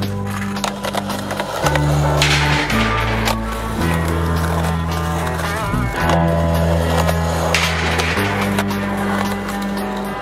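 Backing music with sustained bass chords changing every second or two, mixed with a skateboard rolling over rough concrete, its wheel noise rising in hissy bursts about two seconds in and again near the eight-second mark.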